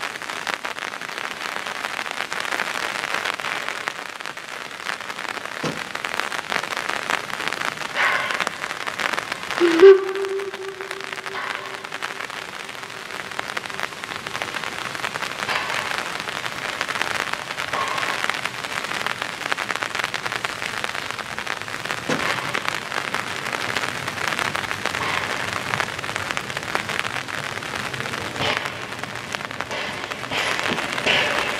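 Rain falling steadily on a platform and the sides of railway coaches. About ten seconds in there is one loud held tone that fades away over a few seconds.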